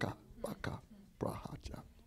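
A man's hushed, whispered speech in three short bursts, heard through a handheld microphone.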